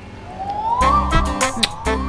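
A song starts: a siren-like tone rises once and then holds, and a heavy beat kicks in just under a second in.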